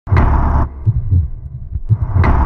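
Opening of a cinematic title-intro soundtrack: a loud hit with a bright burst lasting about half a second, followed by a few deep, low thumps.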